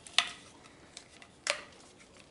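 Hard plastic vacuum parts being handled and snapped together as an accessory tool is fitted onto the clip on a Dyson DC78 wand: two sharp clicks about a second and a quarter apart, with light ticks between.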